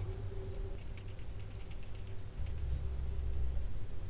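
Faint dabbing and light scratching of a watercolour brush on paper, a few small ticks, over a steady low room hum.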